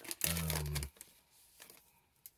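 A man's short hummed "mm" lasting under a second, then a few faint clicks of trading cards and a foil pack wrapper being handled.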